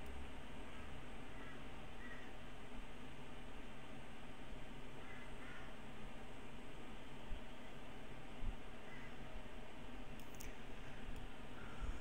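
Steady microphone hiss and hum of a quiet room, with a few faint computer-mouse clicks.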